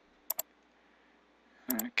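Two sharp computer mouse clicks in quick succession, a double-click, against near-silent room tone.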